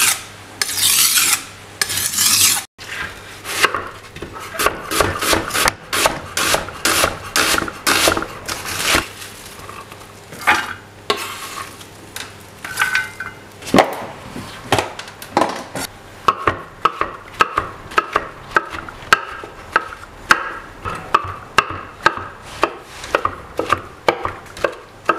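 A kitchen knife drawn over a whetstone in two long rasping strokes, then, after a short break, the knife slicing red onions and chopping mushrooms on a wooden chopping board, with quick cuts and taps about two to three a second.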